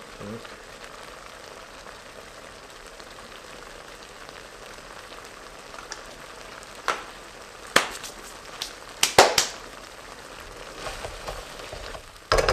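A thick coconut-milk and oat mixture sizzling steadily in a steel wok, with a few sharp knocks a little past halfway, the loudest of them about nine seconds in.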